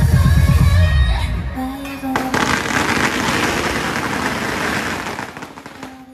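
Electronic dance music with a heavy bass beat that stops about a second and a half in. From about two seconds in, a loud, dense crackling hiss starts sharply and then fades out near the end.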